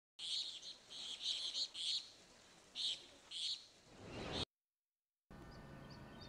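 Birds chirping in short repeated calls, then a brief swell of noise that cuts off abruptly into about a second of silence. Faint outdoor ambience with a few faint chirps follows near the end.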